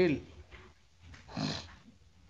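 A man's voice dictating in English, finishing a word at the start, then a pause broken by one short noisy sound about a second and a half in.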